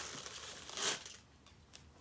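Doll packaging rustling and crinkling as the doll is pulled out of its box. There is one louder swish just under a second in, then only faint rustles.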